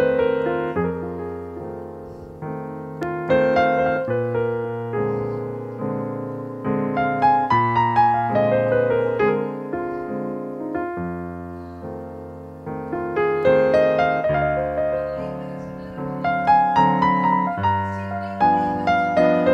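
Digital stage piano playing a 12-bar blues in F with both hands: a left-hand bass line under right-hand chords and melody, in phrases of struck notes that swell and die away.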